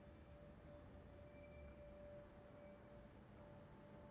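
Near silence with one faint, steady sustained tone held throughout, a quiet drone in the film's score.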